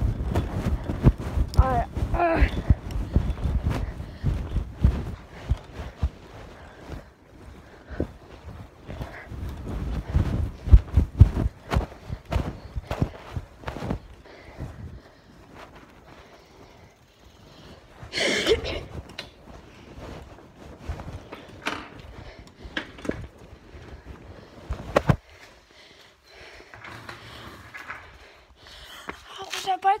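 Muffled rubbing and knocking of fabric against a phone's microphone inside a pocket, with a low rumble; busiest in the first dozen seconds, then quieter, with one louder scuffle past the middle.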